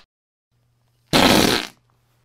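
A very loud fart sound effect: one blast about a second in, lasting a little over half a second, with a faint low drone leading into it.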